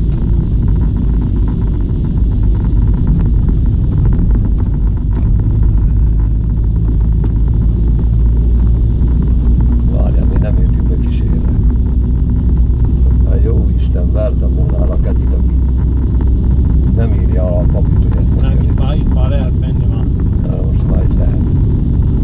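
Steady low rumble of a car's engine and tyres heard from inside the cabin while driving slowly over a rough road.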